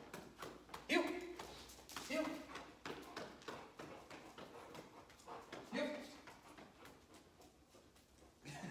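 A boxer's claws click and patter on a hard floor as it trots about, mixed with a person's footsteps. A few short voice sounds break in, near 1 s, 2 s and 6 s.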